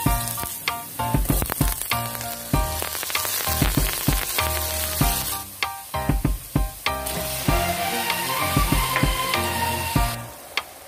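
Food sizzling as it fries in oil in a stainless pot: chopped onion and garlic, then diced carrots and potatoes. Background music with a steady beat plays over it.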